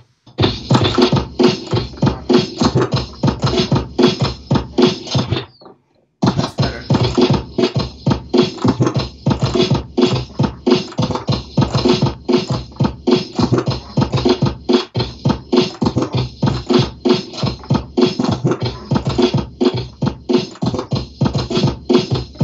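Beat juggling on two turntables: a drum break on two copies of a vinyl record cut back and forth with the mixer's crossfader, kicks and snares in a steady, rhythmic pattern. The beat drops out for about half a second a little past five seconds in, then picks up again.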